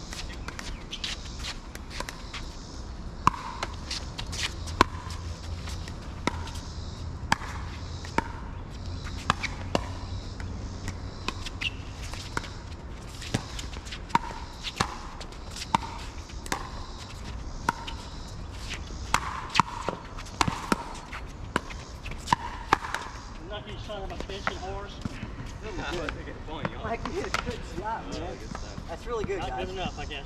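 Pickleball paddles striking the hard plastic ball in a rally: a quick run of sharp pops, each with a short ring. The pops stop near the end.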